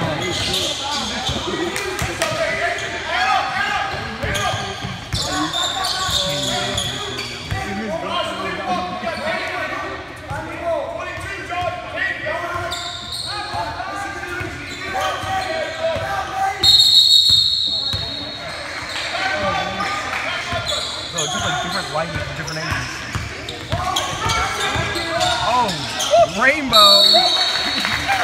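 Basketball game in a gym hall: the ball bouncing on the hardwood court amid voices from players and crowd. A referee's whistle blows two long blasts, one about two-thirds of the way in and one near the end.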